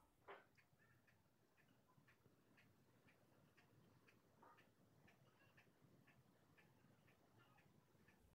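Near silence, with faint ticks about twice a second.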